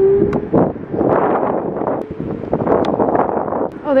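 Wind rushing over the microphone while riding an electric scooter, with a short rising whine from the scooter's motor at the very start.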